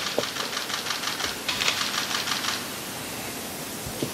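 Press cameras' shutters firing in rapid bursts: two runs of fast clicking that stop about two and a half seconds in, leaving a faint steady hiss.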